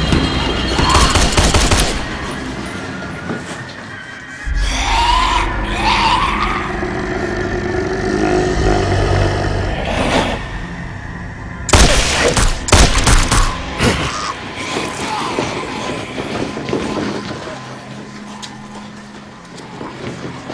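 Action-horror film soundtrack: tense score music with rapid bursts of gunfire at the start and again about twelve seconds in, and a deep rumble between them.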